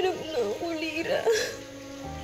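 A woman crying, her sobbing voice wavering and breaking in pitch, over soft background music; the sobs die away about a second and a half in.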